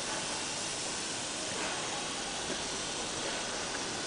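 Steady hiss of water spraying from a garden hose with a large leak.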